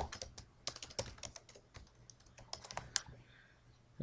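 Typing on a computer keyboard: a quick run of keystrokes that enters a currency-pair symbol into the trading platform's symbol box, stopping about three seconds in.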